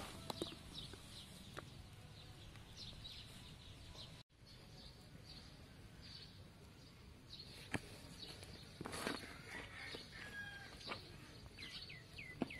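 Faint rustling and small clicks of hands sorting through a plastic basin heaped with crickets, with a few short, high bird chirps in the background in the second half.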